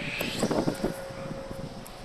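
Strong sea wind buffeting the phone's microphone, an uneven rumble with a faint steady hum underneath.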